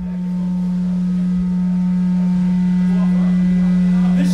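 Amplified drone held on one low, steady pitch, slowly swelling in loudness, at the opening of a live rock song. A voice starts faintly near the end.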